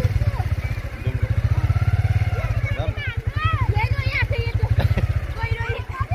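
Voices of people calling out to each other while swimming in a river, over a steady low rumble that pulses rapidly.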